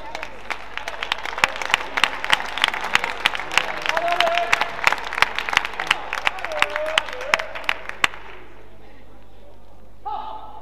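Spectators clapping after a won point in a badminton match, with individual claps standing out from a small crowd. The clapping builds through the middle and stops abruptly about eight seconds in.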